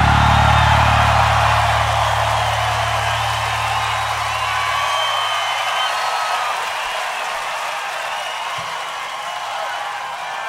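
A live rock band's final chord rings out over a cheering, whistling crowd. The low sustained notes cut off about halfway through, leaving the crowd cheering as it slowly dies down.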